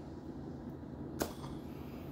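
Low, steady room tone with a single sharp click a little over a second in.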